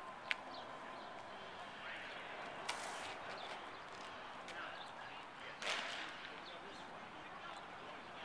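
Outdoor background with faint distant voices, a single sharp click just after the start and a short rush of noise about two-thirds of the way through.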